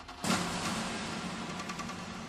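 Sound effect for an animated logo: a sudden swell about a quarter second in, then a steady low hum with hiss and faint crackles that slowly fades.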